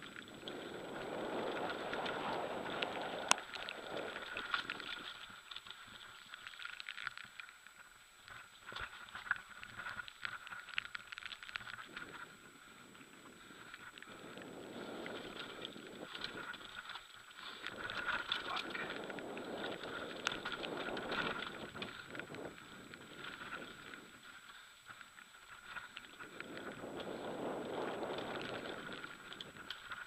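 Bicycle riding downhill on a forest dirt trail: tyres rolling over the ground and the bike rattling, with many small clicks over bumps. Wind on the microphone rises and falls in long swells with speed.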